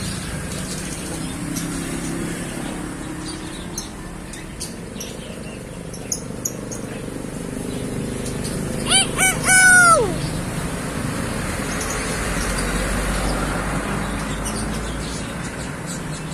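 Common hill myna giving one loud crow-like call about nine seconds in: a few short arched notes, then a longer note that drops away in pitch. Faint high chirps come and go throughout.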